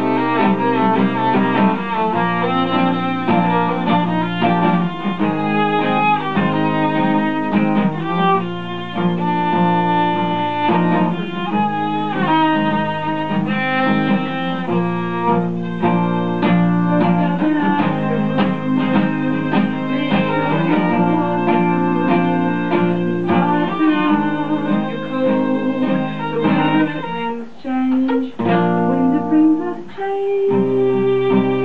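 Live duet of a bowed violin and a strummed acoustic guitar playing an instrumental passage of a folk song, the violin carrying the melody over the guitar's chords.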